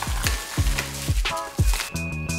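Bubble wrap and plastic packaging crinkling and crackling as hands unwrap them, over background music with a steady beat.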